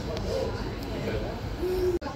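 Soft, wordless voices over a steady low rumble, ending in a short held 'hoo'-like vocal note near the end.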